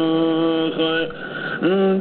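A man chanting a Kurdish qasida solo. He holds one long steady note that breaks off about a second in, then after a short pause glides up into the next phrase.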